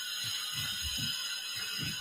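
Steady background noise of construction work outside coming in through an open door, with several soft low thumps as a person shifts and pushes up off a floor mat.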